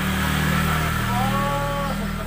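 Motorcycle engine running steadily at low revs, a low hum throughout. About a second in, a drawn-out single tone is held for most of a second over it.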